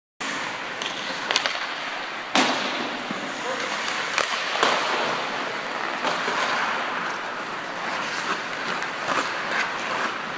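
Ice hockey skates scraping and carving on the ice, with sharp clacks of sticks and puck scattered through; the loudest comes a little over two seconds in.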